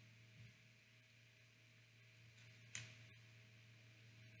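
Near silence: room tone with a faint steady low hum, broken once, about three quarters of the way in, by a brief soft sound.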